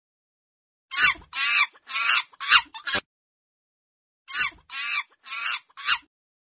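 Monkey chattering calls: two quick runs of short, high-pitched calls, about five or six each. The first run comes about a second in, the second about four seconds in.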